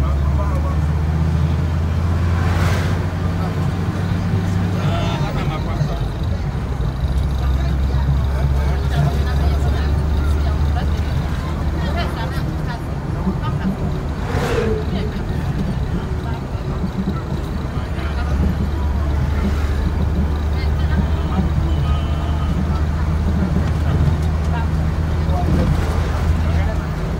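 Steady engine and road drone of a vehicle driving along a paved road. Oncoming vehicles rush past about three seconds in and again about halfway through; the second is a large truck.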